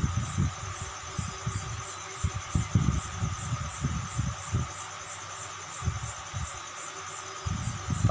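Ballpoint pen writing on paper, heard as soft irregular low taps and knocks through the desk. A high, evenly pulsing insect chirp runs steadily in the background.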